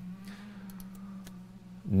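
A pause in speech, leaving a low steady hum and a few faint clicks about two-thirds of a second in and again just after a second.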